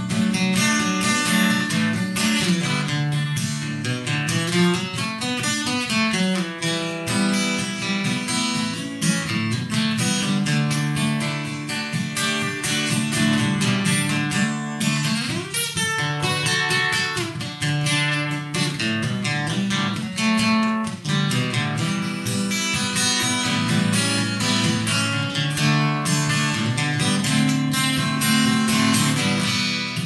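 Acoustic guitar played solo, with busy strumming and picking through an instrumental break between sung verses.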